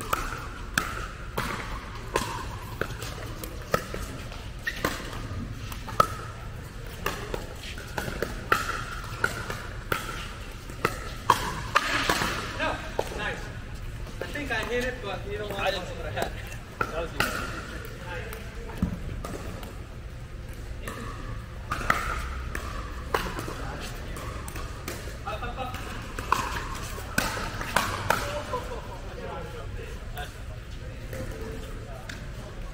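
Pickleball rally: paddles hitting a plastic pickleball and the ball bouncing on the court, sharp pops about one or two a second with brief gaps between points. Voices talk in the background.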